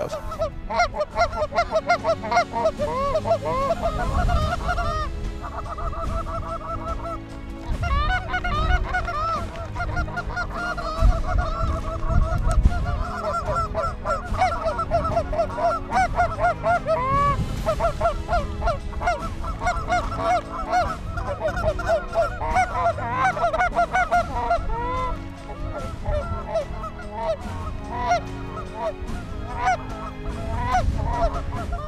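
Rapid, continuous Canada goose honks and clucks from short reed goose calls blown aggressively. It imitates the feeding chatter of geese on the ground to draw in a flock.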